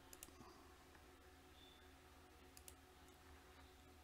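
Near silence: faint steady electrical hum with a few sharp computer-mouse clicks, a pair near the start and another pair about two and a half seconds in.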